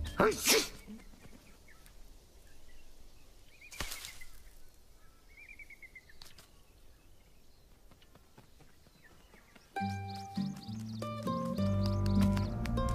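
Quiet woodland ambience with a few short, faint bird chirps, a brief swish just after the start and a single soft tick about four seconds in. Gentle music comes in near the end.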